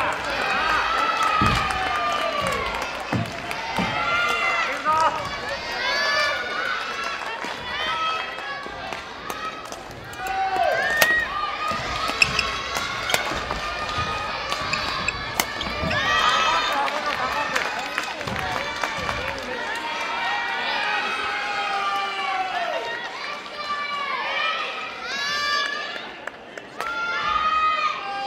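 Many high children's voices shouting and calling across a gymnasium, overlapping throughout, with occasional sharp clicks of badminton rackets hitting the shuttlecock.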